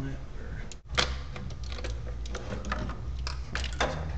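Plastic engine air-intake resonator being pulled loose and lifted off the throttle body: a run of clicks, knocks and rattles of hard plastic, with a sharp knock about a second in, over a steady low hum.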